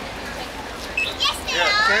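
Background chatter of people at an outdoor gathering, with a high-pitched voice calling out in the second half.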